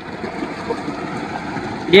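Water gushing steadily from a tubewell's outlet pipe and splashing into a concrete tank.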